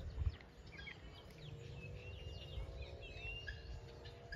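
Small birds chirping and calling in many short, quick notes, over a faint steady hum.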